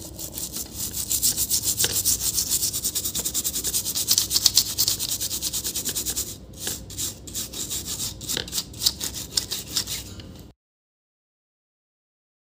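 Toothbrush bristles scrubbing a laptop motherboard in rapid back-and-forth strokes. About six seconds in the strokes thin out and grow uneven, and the sound cuts off shortly before the end.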